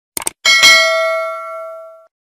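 Mouse-click sound effect, a quick double click, then a notification-bell ding from a subscribe-button animation that rings out and fades over about a second and a half.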